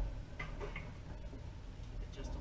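Wood stove insert's door shut with a low thump at the start, then two light metal clicks as the door latch is worked.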